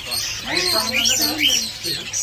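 Chirping and twittering of many caged parrots and parakeets, with a couple of short rise-and-fall whistles about a second in.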